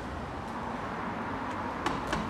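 Steady hum of road traffic. A single sharp click sounds near the end.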